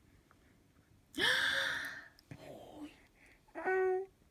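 Five-month-old baby vocalizing: a breathy, rising squeal about a second in, then a short, steady cooing note near the end.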